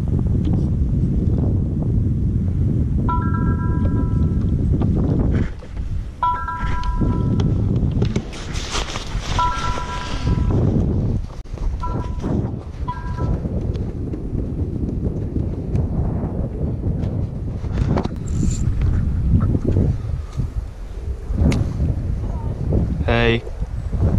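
Mobile phone ringtone: a chord of steady tones ringing in five short bursts, starting about three seconds in and stopping about thirteen seconds in. Wind rumbles on the microphone throughout, with a rustle partway through the ringing.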